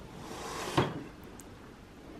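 The drawer of an Ameriwood Parsons desk being pulled open: a short sliding rub that ends in one sharp knock.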